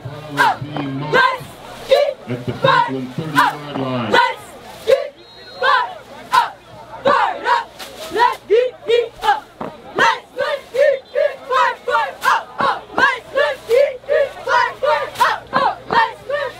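Cheerleading squad chanting a cheer in unison, short shouted calls at a steady rhythm of about two a second, with sharp percussive hits keeping the beat. A low pitched line runs under the first four seconds.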